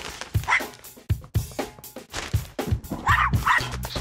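Theme music with a driving drum beat, over which a small dog barks: one short yip about half a second in, then two quick barks about three seconds in.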